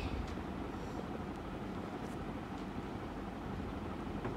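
Steady low background noise, a faint rumbling hiss, with a few faint ticks.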